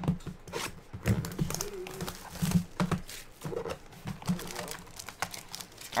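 Plastic wrap and foil card packs crinkling and tearing as a trading-card box is cut open with a utility knife and its packs handled. The sound is a run of irregular crackles and clicks.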